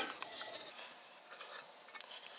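Faint scratching of a marker drawing on the corners of a thin-gauge aluminum enclosure, in a few short strokes, with light metal handling.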